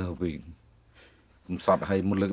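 A man speaking in short phrases, pausing for about a second in the middle. Behind him is a steady, high-pitched insect drone.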